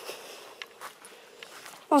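Faint rustling and a few soft ticks over a quiet outdoor background, the sort made by someone moving the phone or stepping on ground vegetation.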